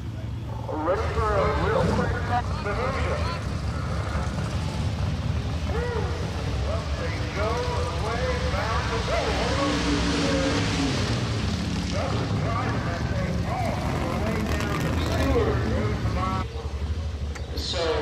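Indistinct voices talking over a steady low engine rumble from vehicles in a drag-strip pit area, with a broad rushing noise that swells and fades in the middle.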